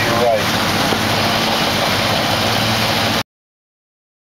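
Twin outboard engines running underway, a steady hum mixed with wind and water rush, with a brief voice just after the start; it cuts off abruptly to silence about three seconds in.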